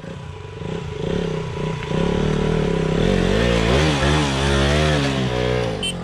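Motorcycle engine approaching and growing louder over the first few seconds, its pitch rising and falling as the throttle is opened and eased.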